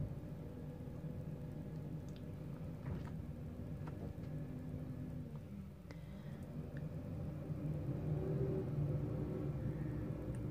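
A low, engine-like mechanical hum whose pitch dips about halfway through and then rises as it grows louder near the end, with a few faint ticks over it.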